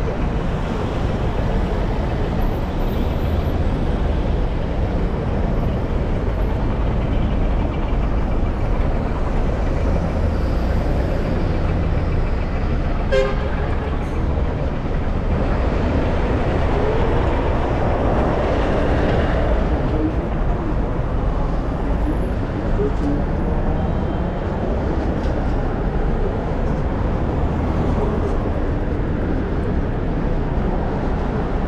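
Steady road traffic on a busy city street, with a brief horn toot about 13 seconds in and a vehicle passing louder a little past the middle.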